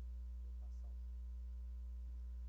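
Steady low electrical mains hum from an open microphone and sound-system line, unchanging throughout.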